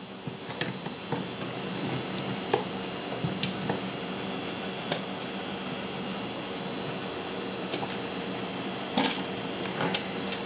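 Light clicks and knocks of hard plastic washing-machine agitator parts being handled and turned as the auger and cam unit are lined up, the strongest a couple of clicks near the end, over a steady background hum.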